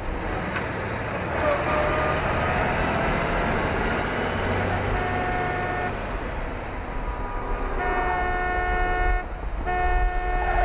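Road noise of a moving vehicle under a high whine that sweeps down, up and down again. A horn blares twice: briefly near the middle, then longer and fuller near the end.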